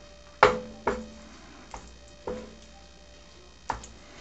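A stirring utensil knocking against the sides of a stainless steel skillet while stirring thick tomato sauce: about five irregular knocks, each leaving a brief ring from the pan.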